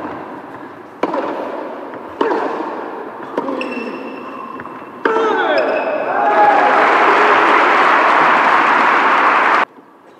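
Tennis rally on an indoor hard court: the racket strikes the ball four times, a little over a second apart. After the last shot come shouts, then the crowd applauds and cheers loudly for about three seconds until a sudden cut.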